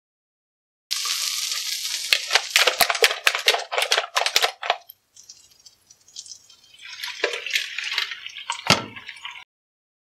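Butter sizzling and crackling in a hot frying pan, with sharp clicks as the pan is tilted about. A few seconds later beaten egg is poured into the pan and hisses on the hot butter, with one thump near the end.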